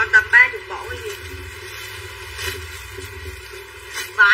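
Mostly speech: a woman's brief words at the very start, then a steady low background.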